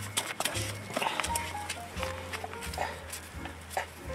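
Background music with a steady bass line and a simple stepping melody, with scattered short clicks and knocks over it.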